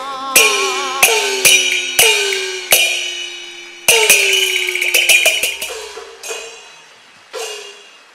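Chinese opera percussion: gong and cymbal strikes, each gong stroke ringing with a pitch that drops as it fades, with a quick run of strokes about four to five seconds in. It follows directly on the sung line and closes the passage.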